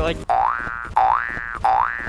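Cartoon 'boing' spring sound effect, played three times in a row, each one a short tone that rises in pitch, timed to a person's jumps.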